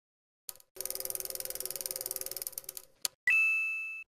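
Logo-intro sound effect: a click, then about two seconds of rapid, even ticking, another click, and a bright bell-like ding that rings and fades away.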